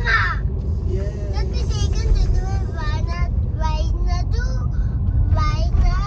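Steady low rumble of a car driving, heard from inside the cabin, with voices over it throughout.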